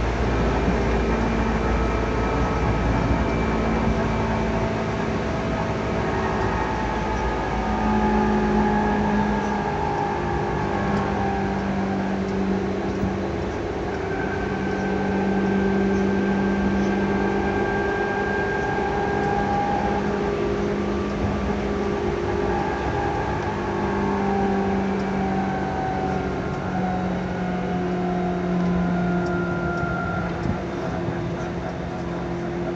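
Seibu 2000-series electric train, set 2085F, heard from on board while running: a steady rolling noise with a traction-motor whine that holds several pitches, shifting slightly now and then. A deep rumble fades out about five seconds in.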